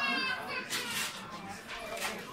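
Background voices of people talking and moving about, with a high, drawn-out call ending just after the start and a brief hiss about three-quarters of a second in.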